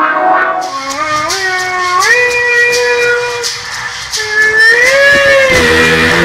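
Rock band music. A sustained lead tone slides upward in steps, holds, then bends up and back down, over steady cymbal ticks, and a heavy bass line comes in near the end.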